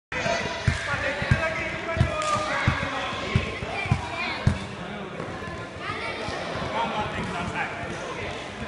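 A soccer ball being dribbled on a wooden gym floor: a run of seven dull thumps, about one every two-thirds of a second, that stops about halfway through. Children's voices chatter throughout.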